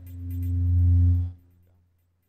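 Synthesized electronic soundtrack of a 4K demoscene intro: a deep bass synth note swells up over about a second, with a few quick high ticks at its start, then cuts off sharply after about a second and a half.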